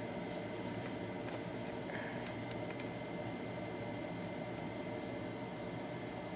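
Steady low hiss of room background noise with a faint, steady high-pitched tone running through it, and a few light ticks in the first second.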